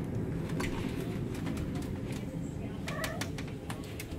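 Ship cabin door being unlocked and opened: a run of sharp clicks from the lock and handle, with a short squeak about three seconds in. Under it a steady low rumble goes on throughout.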